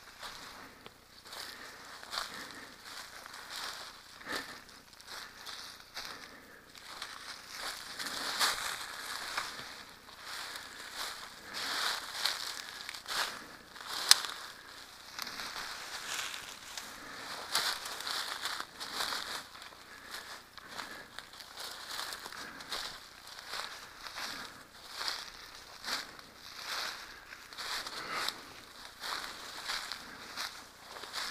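Footsteps pushing through dense undergrowth of ferns and blackberry vines on a steep slope: leaves rustling and dry twigs and litter crackling in an uneven run of steps, with one sharp snap about halfway through.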